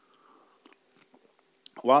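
A man sipping and swallowing water from a glass: faint gulps and small mouth clicks, then he starts speaking near the end.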